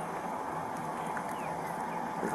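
Outdoor background hiss picked up by a body-worn camera microphone, with a couple of faint bird chirps about halfway through.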